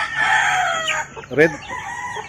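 A rooster crowing: one long crow that trails off in pitch and ends about a second in.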